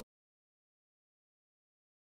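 Complete silence: the audio track is cut dead, with no sound at all.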